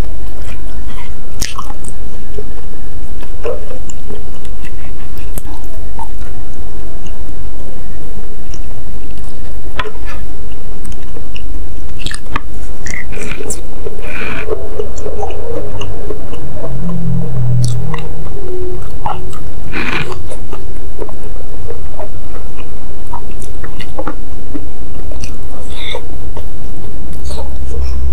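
Close-miked chewing and biting of a mouthful of meatball soup with noodles and rib meat, with many short wet clicks and smacks scattered throughout.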